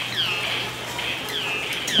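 Animatronic sawmill scene's sound effect: a rhythmic rasping stroke with a falling squeal, repeating about twice a second over a steady low hum.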